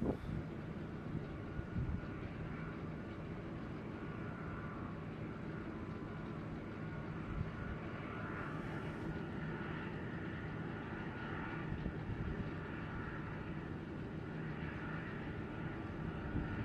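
Distant jet aircraft engines running steadily: a continuous low rumble with a faint high turbine whine.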